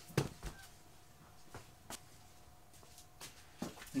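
A few soft, scattered knocks and footsteps as a person moves about fetching something, over a faint steady hum.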